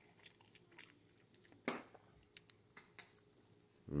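A person chewing a mouthful of salad with salami and sliced cheese: faint, scattered crunching clicks, with one louder crunch near the middle.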